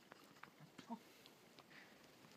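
A dog's faint, short grunts and huffing breaths, with a few light sharp ticks in between.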